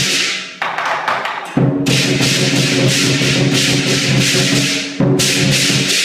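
Chinese lion dance percussion: drum, cymbals and gong playing fast, loud and continuous. The drum and gong drop out for about a second shortly after the start, leaving the cymbals, then the full ensemble comes back in.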